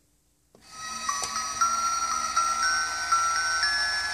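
Toy ballerina music box playing a chiming melody after its button is pressed, the tune starting about half a second in.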